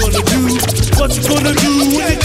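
Hip hop beat with a steady bass line and drums, with turntable scratches cut in during the first second.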